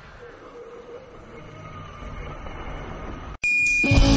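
Faint, quiet soundtrack ambience that slowly swells, then a sudden cut to a single steady high-pitched tone lasting about half a second.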